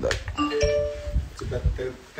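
A short electronic chime of a few quick notes stepping up in pitch, each held briefly, followed by a man's voice near the end.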